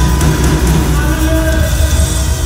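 Live worship band playing loud, full music: drum kit, electric and acoustic guitars and keyboard.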